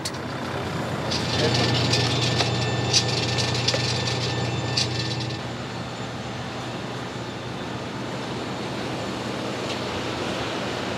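An ambulance van's engine running close by, a steady low drone, which drops away about five seconds in, leaving a quieter steady outdoor hum.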